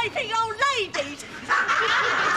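A high, wavering vocal cry from an old woman, then studio audience laughter breaking out about one and a half seconds in.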